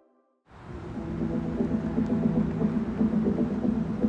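The last of a soft music track fades out into a moment of silence. About half a second in, a steady low hum with a rumble starts and holds.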